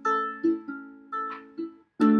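Ukulele strumming chords: about five strokes, each ringing and fading before the next. The sound drops out for a moment near the end.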